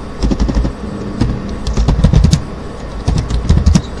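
Computer keyboard typing in several short runs of keystrokes, over a steady low hum.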